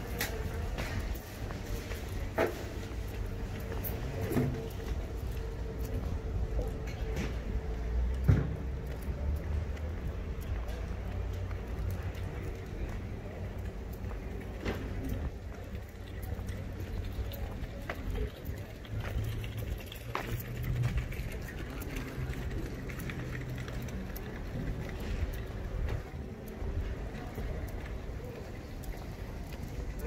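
Outdoor street ambience in a paved town square: a steady low rumble with a faint hum through about the first half, scattered sharp clicks and knocks, and distant voices.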